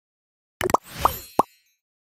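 A quick set of cartoon-style pop sound effects: three short pops with a brief swish among them, starting about half a second in and over by about a second and a half.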